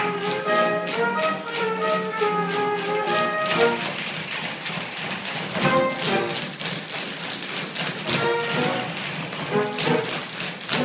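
An ensemble tap-dancing on a wooden stage, a rapid clatter of tap shoes, over a pit orchestra playing show music. Midway the band thins out for a couple of seconds and the taps come to the fore.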